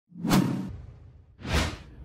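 Two whoosh sound effects of an animated logo sting: the first swells up about a quarter second in and fades away over about a second, the second, shorter, rises and falls near the end.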